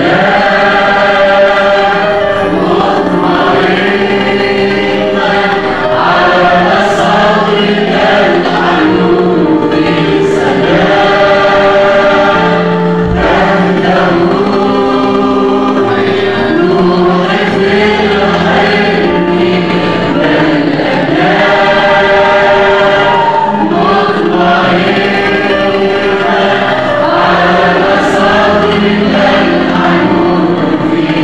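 Mixed choir of men and women singing an Arabic Christian hymn together into microphones, continuously and at full voice.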